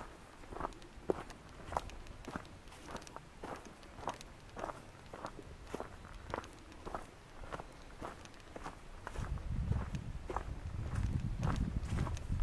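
Footsteps of a person walking at a steady pace on a path of dry fallen leaves and earth, about two steps a second. From about nine seconds in, a low rumble grows underneath the steps.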